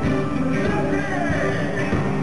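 Loud live pop concert music playing over the stage sound system, heard from the audience.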